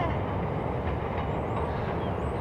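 Steady low rumble of a train running in the distance.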